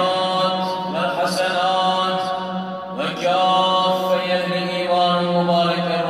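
A single man chanting in the mosque in long held notes, with a new phrase starting about a second in and again about three seconds in: a muezzin's chant as the congregation gathers for prayer.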